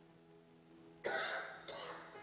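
Soft sustained keyboard chord held underneath, with a person coughing twice, about a second in and again just before the end.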